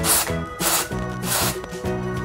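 Background music with three short hissing bursts from an aerosol can of purple hair-tint spray being sprayed onto denim.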